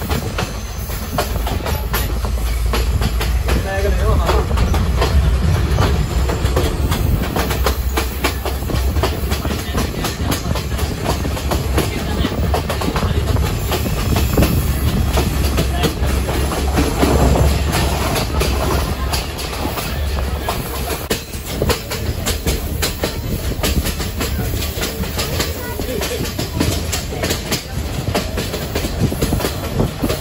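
Passenger train running at speed, its carriage wheels clattering over the rail joints in a quick, steady stream of clicks over a continuous low rumble, heard from an open carriage window.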